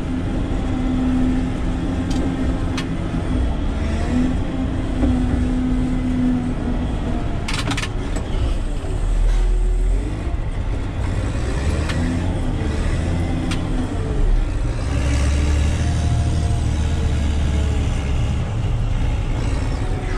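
Caterpillar 120K motor grader's diesel engine running steadily, heard from inside the cab. Its low rumble swells a few times as the machine works, and a steady tone sits over it for the first several seconds.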